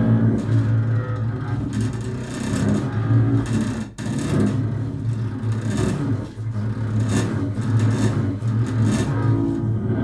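Acoustic double bass played arco: long, low bowed notes with a scratchy rasp from the bow on the strings. The sound breaks off briefly about four seconds in.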